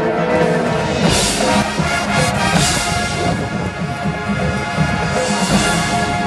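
High school marching band playing its field show: held chords over percussion, with bright loud accents about a second in, around two and a half seconds, and near the end.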